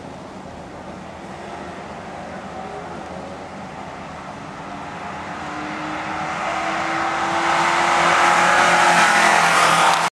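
Toyota Camry drag car's engine pulling down the strip, its note rising slowly in pitch and growing steadily louder as it comes toward and past the listener, loudest near the end.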